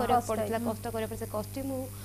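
A woman talking, with a steady low hum underneath.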